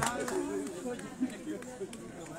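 Indistinct voices of people talking.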